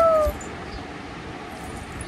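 An infant gives one short coo that rises and falls in pitch at the very start, then there is only faint room noise.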